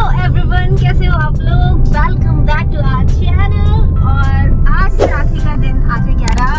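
Talking over the steady low rumble of a moving car, heard from inside the cabin.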